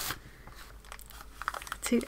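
Faint rustling and crinkling of a paper bag as it is pulled out of a parcel and handled, with a few sharper crinkles near the end.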